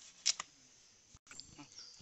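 Large knife cutting the fins off a whole fish: a sharp crunch as the blade goes through the fin about a quarter second in, with a few fainter clicks later.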